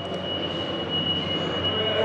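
Steady mechanical rushing noise with a thin, steady high whine over it, growing slightly louder.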